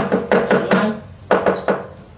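A hand tapping rapidly on a low wooden tabletop, about five taps a second, with a short break about a second in before three more taps.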